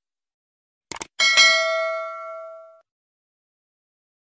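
Subscribe-button animation sound effect: a quick double mouse click about a second in, then a notification bell ding that rings out and fades over about a second and a half.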